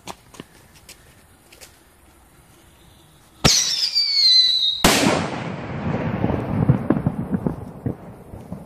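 Firework whistling with a falling pitch for over a second, then a loud bang about five seconds in. The bang's rumbling, crackling echo slowly fades. Faint distant pops come before the whistle.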